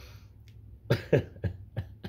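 Four short, throaty vocal bursts from a man in under a second, the first two the loudest, each dropping in pitch.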